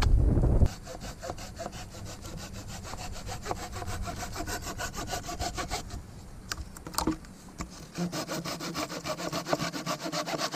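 Hand saw cutting through a dry, barkless wooden pole in quick, even strokes, slowing for a moment about six seconds in and then picking up again. A brief low rumble of wind on the microphone comes first.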